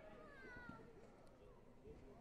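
Faint, echoing ambience of a large sports hall: distant voices, with a short high-pitched cry falling in pitch about half a second in.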